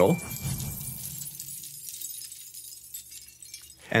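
Small shards of broken glass tinkling and clinking against each other as they are handled, a dense patter of fine high clinks that thins and fades away over about four seconds. This is the last, smallest-pieces stage of a glass sound-effect layer.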